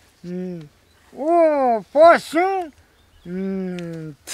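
A man's voice speaking in four drawn-out phrases whose pitch rises and falls, with short pauses between them.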